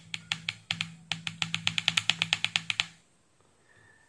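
A rapid run of sharp clicks, about seven a second for three seconds, as the function button of a Kaiweets KM601 digital multimeter is worked to switch it into auto mode. The clicks are followed by a faint short tone near the end.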